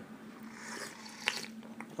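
Soft sipping and mouth sounds of someone tasting tea from a small porcelain cup, with two short faint clicks in the second half.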